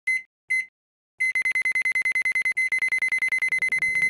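Electronic alarm beeps at one high pitch, a digital-timer sound effect: two short beeps, a pause, then a fast run of about ten beeps a second. A low rumble builds underneath the beeping near the end.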